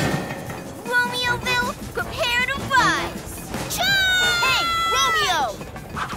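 Cartoon character voices crying out over background music, with short exclamations and then a long, high held yell about four seconds in that falls away at the end.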